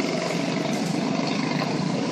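Quarter midget race cars' small single-cylinder engines running together as a steady drone, heard across the track.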